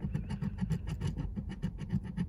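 A plastic scratcher tool scraping the coating off a lottery scratch-off ticket in quick, repeated short strokes.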